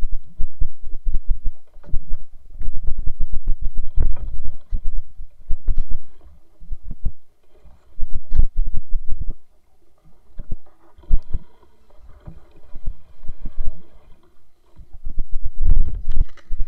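Tall grass and brush rubbing and knocking against a body-mounted camera as a person pushes through dense undergrowth on foot: irregular rustling with dull thumps. It eases for a few seconds in the second half, then picks up again near the end.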